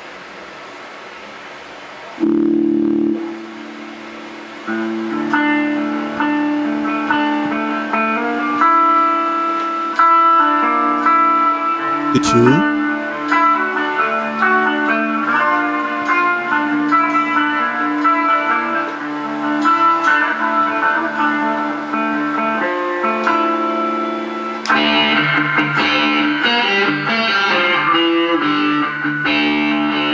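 Electric guitar tuned to drop D, played through Amplitube amp-simulation software, with chords and picked notes ringing out. There is a short pitch sweep about twelve seconds in. Near the end the tone turns brighter and grittier as a footswitch on the KORG AX3000G controller brings in another effect.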